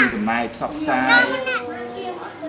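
Speech, with a child's high-pitched voice talking most clearly about a second in.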